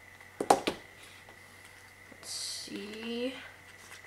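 Handling of a cardboard album case and photobook: two sharp clacks about half a second in, a brief papery rustle a little after two seconds, then a short murmured voice sound.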